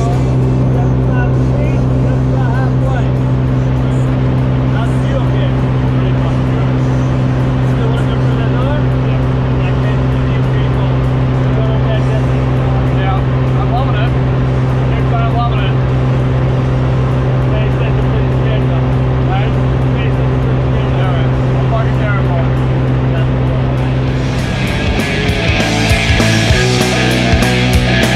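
Single-engine propeller plane's engine and propeller droning at a steady pitch, heard from inside the cabin during the climb, with voices faint underneath. Fuller sound, likely music, rises near the end.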